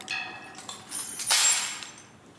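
Metallic clinking: a sharp clink with a short ring, then a louder jangling rattle about a second in.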